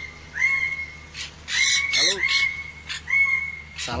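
Yellow-crested cockatoo giving harsh, short screeches, the loudest pair about one and a half to two seconds in and another just before the end.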